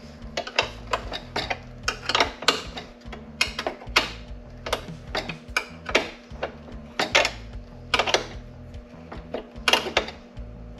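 Steel wrench clicking and clinking on the bolts of the car's side panel as they are tightened: sharp, irregular clicks, two or three a second, over a steady low hum.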